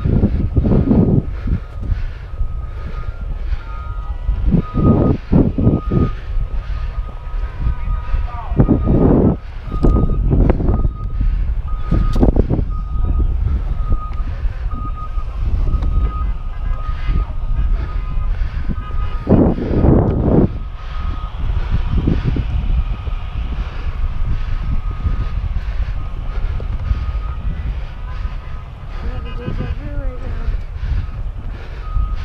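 Heavy construction equipment's reversing alarm beeping over and over at one high pitch, under loud wind buffeting on the microphone that surges several times.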